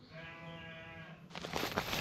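A clear plastic bag holding water and fish crinkles and crackles as it is handled, starting about a second and a half in. Before it, a faint held voice-like tone lasts about a second.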